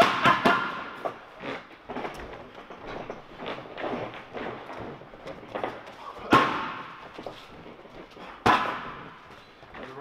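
Boxing gloves slapping against focus mitts during pad work. A quick flurry of sharp punches comes at the start, then a few lighter hits, and two single loud strikes about six and eight and a half seconds in, each ringing briefly in the room.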